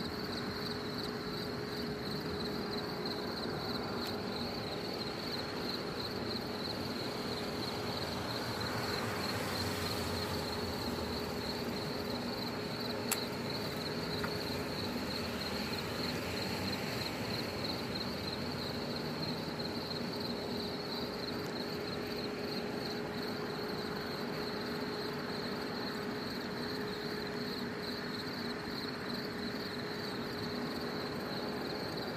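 Insects chirring steadily and continuously on a night, in a fast, high-pitched even pulse, with a steady low hum underneath and a single click about 13 seconds in.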